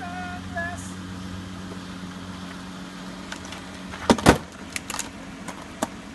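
Steady low hum of a vehicle idling. About four seconds in comes a loud double thump, followed by a few sharp clicks.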